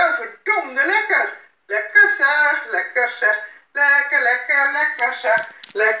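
A woman's voice speaking in short phrases, played back from a recording through computer speakers.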